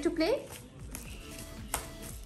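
Soft rustling and a few faint crinkles from a plastic sheet as a child presses and kneads a lump of homemade play dough on it, after a short spoken phrase.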